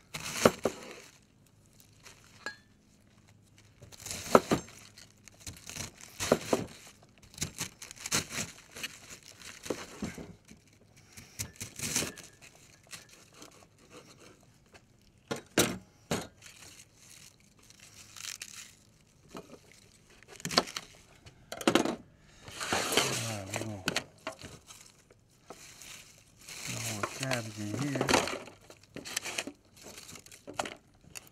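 A large kitchen knife chopping a head of cabbage on a wooden cutting board: irregular sharp cuts and knocks on the board with crisp crunching of the leaves. A man's voice comes in briefly twice in the second half.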